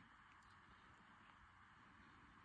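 Near silence: faint room hiss with a couple of very faint ticks about half a second in.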